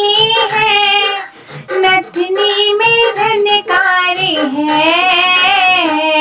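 A young girl's voice singing a Hindi devotional bhajan to the goddess, drawing the notes out with bends and glides in pitch. There is a short break in the voice about a second and a half in.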